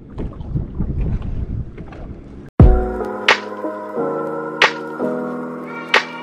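Wind rumbling on the microphone with water noise for about two and a half seconds, then an abrupt cut to intro music: held chords broken by three short, sharp accents about a second and a third apart.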